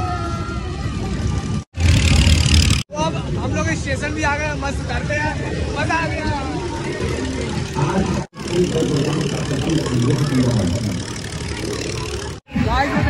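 Children shouting and laughing with excitement on a moving fairground kiddie train ride, over a steady low rumble of the ride in motion. The sound cuts out briefly three times.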